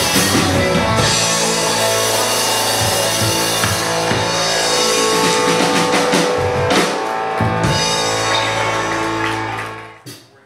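Live rock band playing electric guitars, bass guitar and drum kit, loud and steady, then stopping abruptly just at the end as the song finishes.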